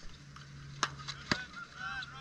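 Two sharp cracks of field hockey sticks striking the ball, about half a second apart. A steady low hum runs underneath, and a short high call comes near the end.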